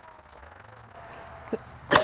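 A man bursts out laughing, a sudden breathy outburst near the end that breaks a quiet stretch of faint background hum.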